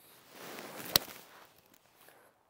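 Golf swing: the club swishes on the downswing and strikes the ball once, with a sharp crack about a second in. The strike is a well-struck tee shot, called "ripped".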